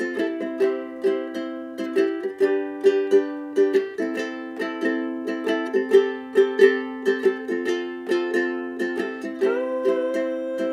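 Recorded Hawaiian-style song playing back: strummed ukulele in a steady rhythm, with no singing. A sliding higher note comes in near the end.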